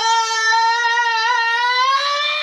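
A man's long, high-pitched scream: one loud held note that rises slightly in pitch.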